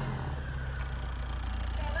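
A 1996 BMW Z3's 1.9-litre four-cylinder engine idling steadily just after starting, heard at the tailpipe as a low, even rumble. This is an engine with a blown head gasket.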